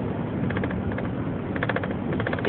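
Steady road and engine noise inside a moving car's cabin, with a rapid run of small clicks or rattles through the middle and latter part.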